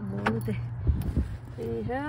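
Keys jangling and a couple of sharp knocks about a second in as a person gets into a car, with a low rumble that stops soon after; a voice speaks briefly.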